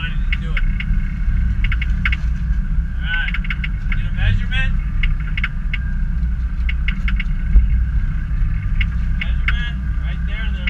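Steady low rumble of a sportfishing boat's engines running, with indistinct voices from the crew around the middle and near the end.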